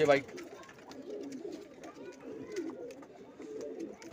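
Domestic pigeons cooing: low, wavering coos repeated and overlapping throughout. A single spoken word comes at the very start.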